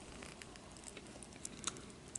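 Faint handling of a small plastic action figure: a few light clicks and rubs as a grey arm piece that popped out is fitted back into its swivel joint.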